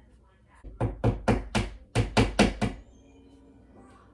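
A hammer driving a nail into the wall: about nine quick blows in two runs, with a short break near the middle.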